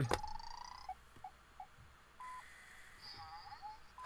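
Botley coding robot's electronic beeps: a tone at the start, three quick short beeps about a second in, one more beep about two seconds in, and a wavering falling chirp near the end.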